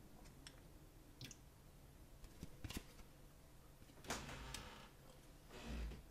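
Faint handling of a stack of trading cards: a few soft clicks and taps, and a brief rustle of card stock sliding about four seconds in.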